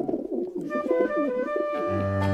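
Pigeon cooing in a warbling run while the banjo music pauses. The banjo music comes back in near the end.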